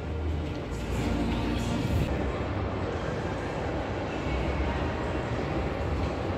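Indoor amusement-park din: a steady low rumble of ride machinery and crowd noise, with faint music in the background.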